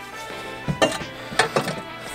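Background music, with a few short metal clinks and knocks through the middle as a bent sheet-metal battery mount is set down onto a car's floor pan.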